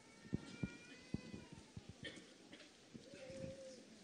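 Quiet background with a few soft low thumps in the first second or so, then a faint short animal call with a rising-and-falling pitch near the end.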